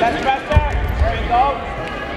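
A heavy thud about half a second in as wrestlers' bodies hit the mat in a takedown, amid shouting voices in a gym hall.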